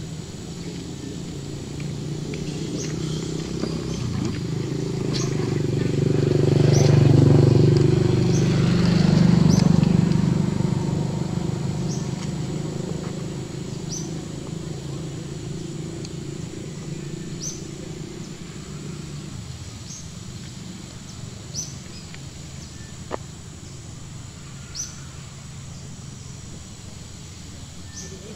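A motor vehicle passing by: a low engine hum swells over several seconds, is loudest about a third of the way in, then fades away. Short high chirps repeat every couple of seconds throughout.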